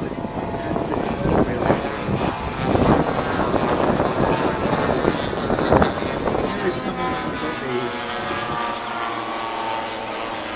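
Radio-controlled model warbirds flying overhead, their propeller engines droning. In the second half this settles into a steady engine note with several tones; the first half is rougher and broken by knocks.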